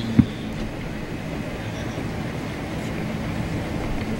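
Steady rushing seaside ambience of wind and surf, with one short low thump near the start.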